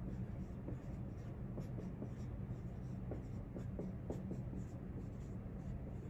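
Dry-erase marker writing on a whiteboard: a run of short, faint, irregular strokes as the letters are drawn, over a steady low hum.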